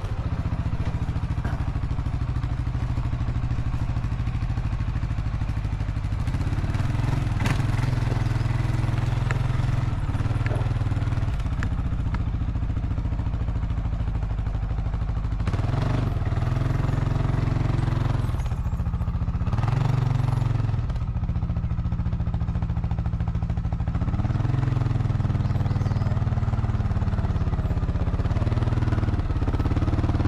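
Quad (ATV) engine running at low speed, a steady hum whose pitch rises and falls a few times as the throttle changes.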